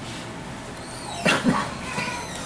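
A man coughing twice in quick succession, a little past a second in, over a steady low room hum.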